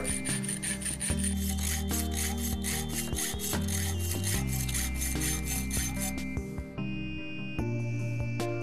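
A fine-toothed hand saw cutting the lock bar into a steel knife liner clamped in a vise, rasping in quick even strokes, about four a second, that stop about six seconds in. Background music plays under it.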